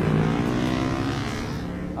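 A motor vehicle's engine running, its pitch sliding slowly down and its level easing off over the two seconds.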